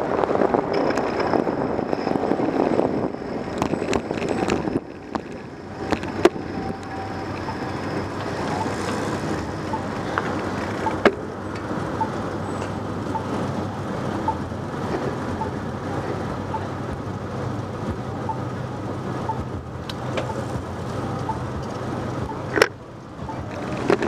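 Wind rush and road noise on a bicycle-mounted camera while riding a city street, dropping off about five seconds in as the bike slows to a stop. Then traffic runs at the intersection with a low hum, a few sharp clicks, and from about halfway a faint tick repeating about once a second, typical of a crosswalk signal's locator tone.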